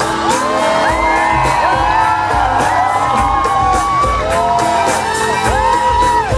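Live rock band playing loudly, with many sliding high notes that rise, hold and fall, over a steady low beat, and the crowd whooping.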